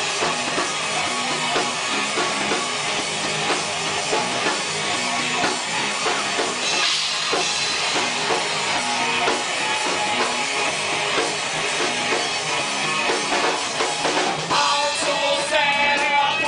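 Live rock band playing with a steady drum-kit beat, bass and guitar. A singing voice comes in near the end.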